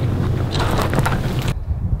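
Wind buffeting the microphone outdoors: a steady low rumble with a rustling hiss and a few faint clicks. The hiss drops away abruptly near the end, leaving the low rumble.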